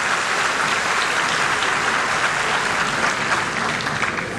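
A large seated audience applauding steadily.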